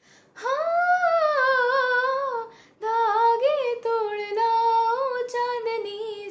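A young girl singing unaccompanied. She opens on a long, wavering held note, takes a short breath about two and a half seconds in, then carries the melody on.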